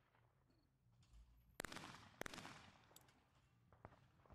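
Two shotgun shots at a pair of clay targets, about half a second apart, each followed by a fading echo.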